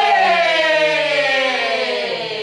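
A long held vocal call in a haka-style chant, one unbroken drawn-out vowel sliding slowly down in pitch.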